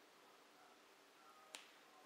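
Near silence with room tone, broken once by a single short sharp click about one and a half seconds in.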